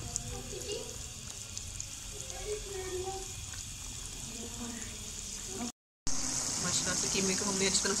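Keema and onions frying in oil in a karahi, a steady sizzle, stirred with a wooden spatula. After a sudden break about six seconds in, the sizzle is louder as the mixture bubbles hard.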